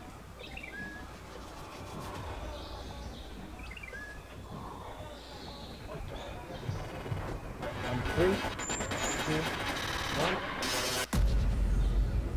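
Birds giving a few short, falling chirps over outdoor background noise. About a second before the end, a loud low rumble takes over.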